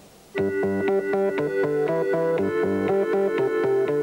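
Synthesizer played from a keyboard: simple, sustained chords over a low bass line, starting a moment in.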